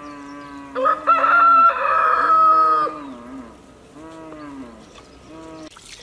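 A cow mooing in long, drawn-out calls, with a rooster crowing loudly over it about a second in. Water starts pouring into a clay pot just before the end.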